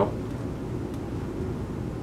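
Small electric cooling fans built into a DevTac Ronin-style helmet, running steadily on medium: an even, low rushing hum.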